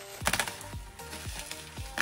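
Plastic bubble wrap crinkling and crackling as it is pulled off a package, with a quick run of crackles about a quarter second in. Background music with a steady beat plays underneath.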